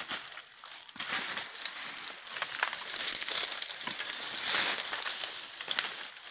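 Dry oil palm fronds and debris crackling and crunching: a dense run of small crackles and rustles that picks up about a second in and keeps going.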